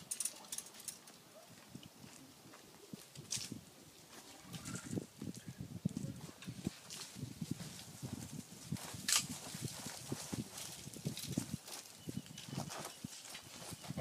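Irregular footsteps crunching over dry dirt and wood chips, starting about four seconds in, with a few sharp clicks among them.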